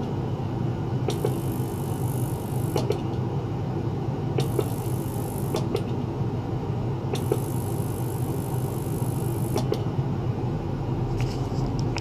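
Small ultrasonic cleaner running, a steady low buzz with a high hiss that cuts in and out every one to two seconds.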